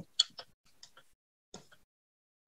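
Keys on a computer keyboard being typed: a quick, uneven run of light clicks in the first second, then a single click about a second and a half in.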